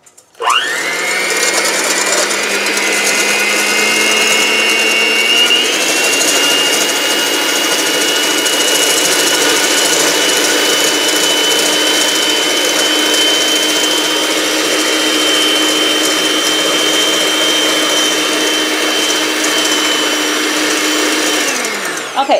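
Black & Decker electric hand mixer with a whisk attachment whipping egg whites in a stainless steel bowl. The motor starts up about half a second in, its pitch steps up a little about five seconds in, then it runs steadily and switches off just before the end, as the whites reach the foamy stage.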